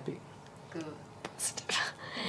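A few short, quiet spoken fragments, partly whispered.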